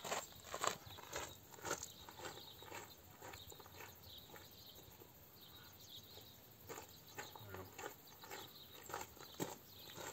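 Footsteps on gravel, a steady run of scuffs at the start that dies away, with a quiet stretch between, then returning from about seven seconds in.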